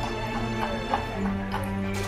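A carriage horse's hooves clip-clopping on a brick street, heard as several separate clicks, under music with long held notes.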